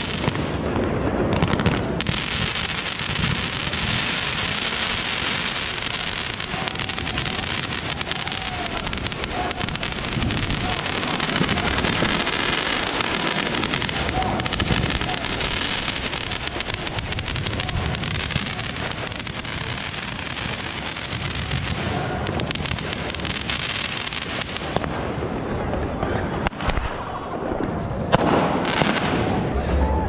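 Fireworks going off all around: a dense, continuous crackle of many small bangs and pops from rockets and firecrackers, thinning out somewhat near the end.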